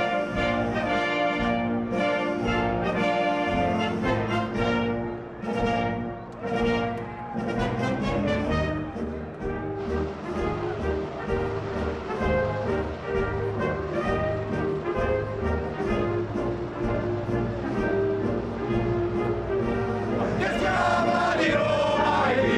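National anthem played by an orchestra with brass at a podium ceremony. Near the end a crowd of men sings along loudly.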